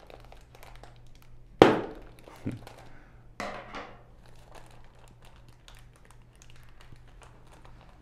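Scissors cutting through the top of a thin plastic coral-shipping bag, with a sharp snip about a second and a half in, two softer sharp sounds within the next two seconds, and the plastic crinkling as the bag is handled.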